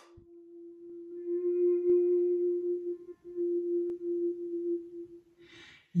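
A single sustained musical tone with overtones, swelling over the first two seconds and held, with a brief break about three seconds in, fading out near the end. Two faint clicks are heard about two seconds apart.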